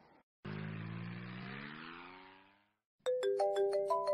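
Motorcycle engine pulling away, its pitch rising as it fades out over about two seconds. After a short break, a phone ringtone starts about three seconds in: a tune of quick, evenly spaced notes, louder than the engine.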